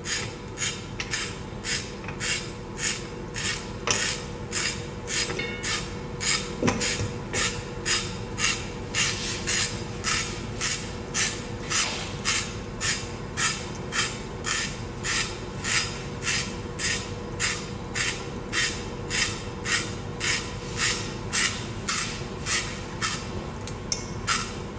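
Carrot being turned by hand against the blade of a stainless steel handheld spiral slicer: a rhythmic scraping cut, about two strokes a second, as spiral strands are shaved off. A faint steady hum lies underneath.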